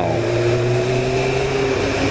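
Motorcycle engine running steadily under way, its pitch rising slightly, over a steady rush of wind and road noise.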